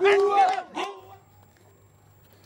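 A crowd of men shouting and chanting, which cuts off abruptly about a second in, leaving only a faint low hum.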